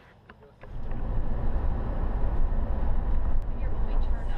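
Bus on the road, heard from up front: a loud, steady low rumble of engine and road noise that cuts in suddenly about half a second in, after a few faint clicks.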